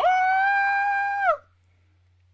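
A woman's high-pitched squeal, held at one steady pitch for over a second, then dropping away at the end.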